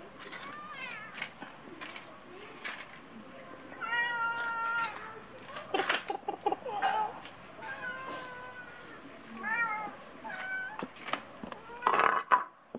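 Domestic cats meowing for food, about six calls, some short and rising, others long and drawn out, with a few light knocks in between.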